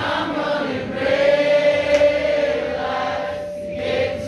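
Live singing that sounds like several voices together, choir-like, settling into one long held note from about a second in until near the end.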